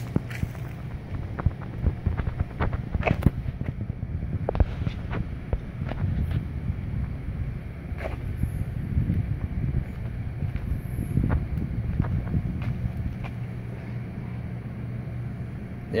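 Outdoor background: a steady low hum with an uneven rumble beneath it and scattered faint clicks throughout.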